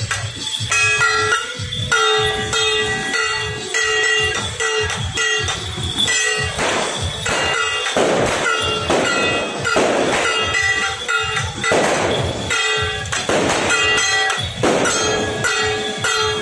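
Loud temple-procession music: a held, pitched melody line over a fast rhythmic percussion beat. Several louder noisy bursts, each about a second long, come in the second half.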